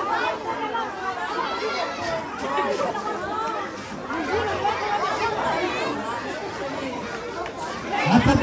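Crowd chatter: many voices talking at once, children's among them, with no single voice standing out.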